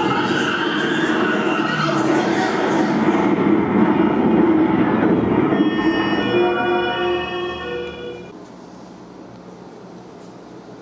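Theatre sound effect of the fatal car accident: a loud rushing vehicle rumble, then a cluster of steady blaring tones about six seconds in that dies away by about eight seconds, leaving only a quiet room hum.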